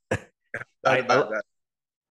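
A man's voice in three short bursts, the last and longest about a second in.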